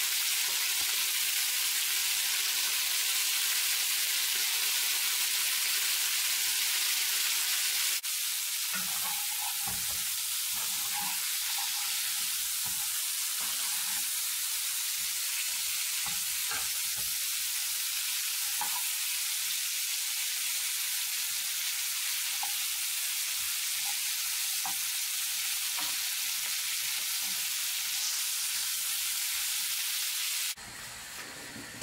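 Pork ribs frying in a pan with a steady sizzle. About eight seconds in, the sizzle steps down slightly, and light clicks and scrapes come from a spatula turning the ribs.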